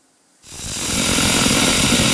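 MIG welding arc on aluminum, from a Hobart IronMan 230 with a spool gun feeding 3/64-inch wire, striking about half a second in and running with a dense, rough crackle. It is an erratic arc throwing spatter rather than a smooth spray transfer: too much argon flowing and too much wire at the recommended settings.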